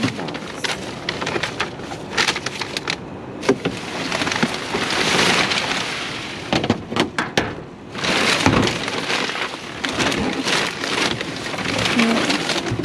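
Plastic bags and packaging film rustling and crinkling as they are pushed aside and pulled out of a dumpster, with many sharp crackles. The rustling thickens into two longer stretches, about four to six seconds in and again around eight to nine seconds in.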